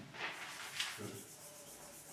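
Chalk writing being wiped off a blackboard: a few soft rubbing strokes in the first second, then fainter.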